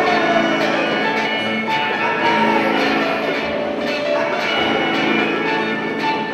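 Live music played by a small group of children on instruments, several held notes sounding together, some sliding in pitch.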